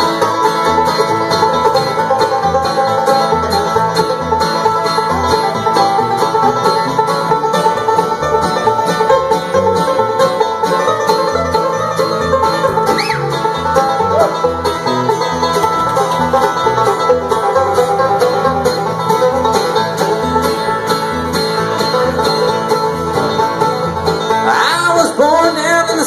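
Bluegrass band playing an instrumental break between verses: five-string banjo, acoustic guitar, mandolin and upright bass, with the bass keeping a steady beat.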